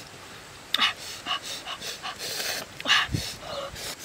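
A boy eating grilled fish with his fingers close to the microphone: a string of short, breathy smacking and sucking mouth sounds, the loudest near the end.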